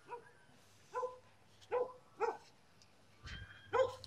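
A dog barking in short, separate barks, about five at uneven intervals.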